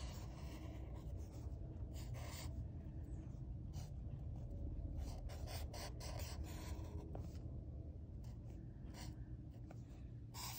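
Sharpie felt-tip marker drawing on paper: faint, short, irregular scratching strokes of the tip across the sheet.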